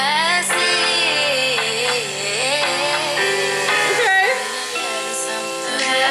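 Playback of an early studio-recorded song by the singer herself: a sung vocal line gliding over sustained chords.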